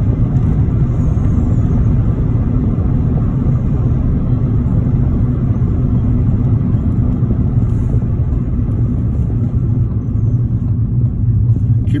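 Steady low rumble of engine and tyre noise heard inside a car's cabin while driving along.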